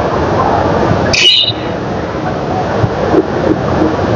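Busy market din: a small pickup truck's engine running as it moves slowly along the aisle, amid the chatter of people. A brief high squeak about a second in.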